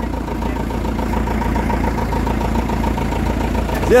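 Engine of an old open 4x4 truck idling steadily, with an even, regular beat.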